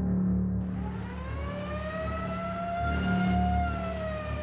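Fire engine siren sound effect: one slow wail that rises in pitch, peaks near the end and begins to fall, over a low engine rumble.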